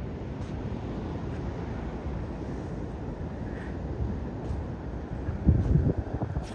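Steady wash of ocean surf mixed with wind buffeting the microphone, the buffeting getting harder near the end.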